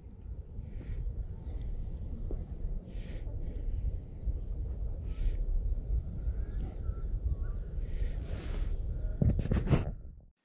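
Wind rumbling on the microphone outdoors, with a few short, scattered bird calls above it. A quick burst of knocks and handling noise on the camera comes near the end.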